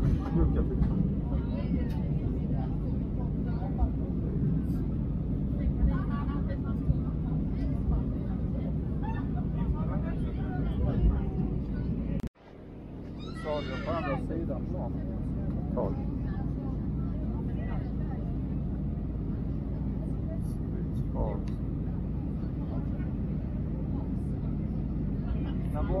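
Steady low drone of a jet airliner's cabin in descent, engines and airflow, with voices talking intermittently over it. About twelve seconds in, the sound cuts out abruptly and fades back in over a second.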